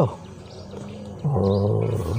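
A man's low voice holding a long, level 'uhh' for about a second in the second half, a hesitation sound just before he goes on talking.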